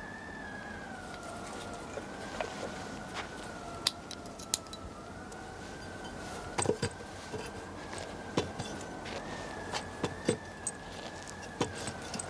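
Line noise on a tapped overhead telephone line: a steady high whine that wavers slightly in pitch, with scattered sharp clicks and crackles.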